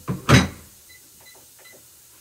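A sharp thump on a hard surface about a third of a second in, then light clicking handling noises and three faint, short high beeps.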